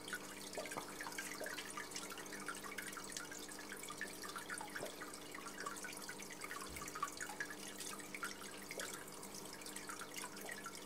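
Water trickling and dripping steadily in an aquarium set up as a flowing river, with many small rapid drips over a faint steady hum.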